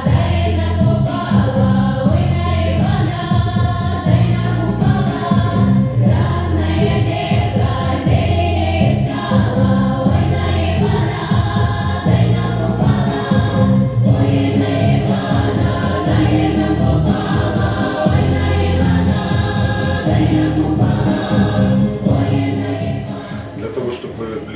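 A choir singing a song over instrumental accompaniment with a heavy bass line; the music gets a little quieter near the end.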